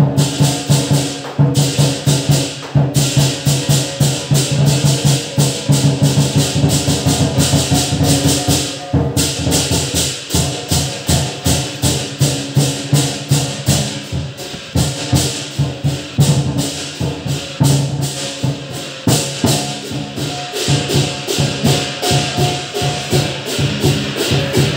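Lion dance percussion: a drum beaten in a fast, steady rhythm with clashing cymbals, played without a break.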